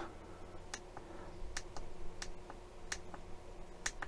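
Faint, irregular small plastic clicks, about eight of them, from buttons being pressed on a digital microscope's remote to switch it from still to video mode, over a faint steady hum.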